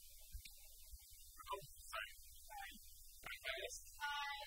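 Low steady electrical hum in the recording, with faint brief sounds scattered over it.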